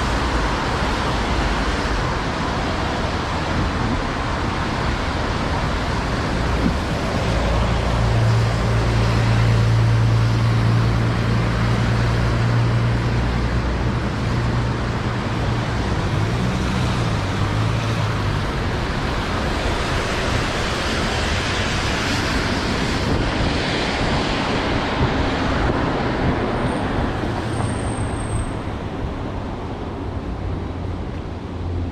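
Street traffic on wet asphalt: a steady hiss of tyres on the rain-soaked road, with a vehicle engine's low hum coming up about a quarter of the way in and fading away about two-thirds through.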